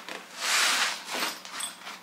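Zipper on a packed fabric tool bag being pulled shut: one long rasping pull lasting most of a second, then a few shorter tugs as the stuffed bag is closed.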